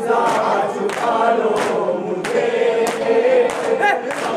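Group of men chanting a noha, a Shia lament, together, over a steady beat of sharp chest-beating (matam) strikes, about one every two-thirds of a second.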